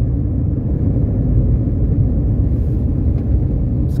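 Car driving along a road, heard from inside the cabin: a steady low rumble of engine and tyre noise.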